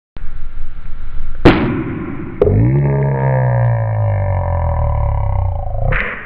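A 35 mm film canister popping as carbon dioxide from baking soda and vinegar blows its snap-on lid off: a sharp pop about one and a half seconds in, then a click. A long, low, drawn-out voice follows, rising briefly and then sliding slowly down in pitch, as in a slowed-down replay.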